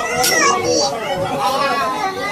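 A high-pitched, sped-up cartoon voice of the Talking Tom kind, talking without a pause.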